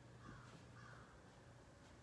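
Near silence: quiet church room tone, with two faint short calls about half a second apart within the first second.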